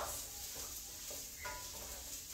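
Diced potatoes and chopped onion sizzling in oil in a frying pan, with a spatula stirring them.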